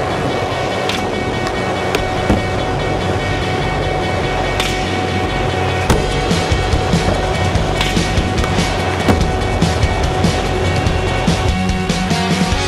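Skateboard wheels rolling on wooden skatepark ramps, with several sharp clacks from the board, under a steady music track.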